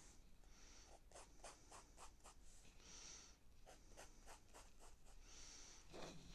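Faint pencil scratching on paper: a few longer drawn lines mixed with runs of quick short strokes.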